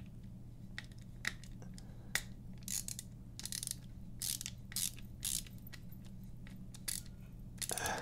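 Small clicks and short scrapes of a titanium folding knife's handle parts being worked apart by hand during disassembly, scattered irregularly, over a steady low hum.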